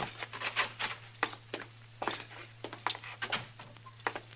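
Radio-drama footsteps of two men walking in, a string of short, irregular steps a few a second, over a steady low hum.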